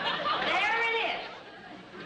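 A person's voice: a short, high-pitched vocal sound that bends up and down in the first second or so, then quieter.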